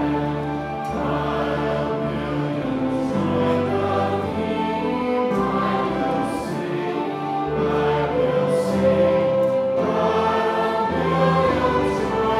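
A church choir sings a hymn with piano and instrumental accompaniment. The notes are long and held, over a moving bass line.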